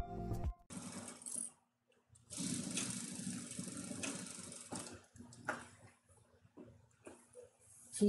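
Industrial straight-stitch sewing machine stitching a seam for about two and a half seconds, with a brief short run just before, then stopping; a faint steady motor hum stays underneath. Background music cuts out right at the start, and a few light clicks follow near the end as the work is handled.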